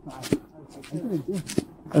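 Footsteps crunching on packed snow, about two steps a second, with quiet talking underneath.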